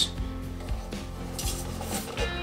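Rubbing and rustling as an aluminium fuel surge tank with its plastic-wrapped pumps is handled, with a brief rustle about one and a half seconds in, over quiet background music.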